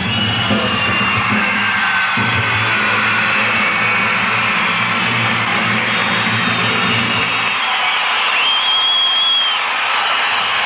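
Live concert sound: the band holds a low sustained chord that stops about seven and a half seconds in, over the noise of a cheering, screaming crowd, with one high held scream near the end.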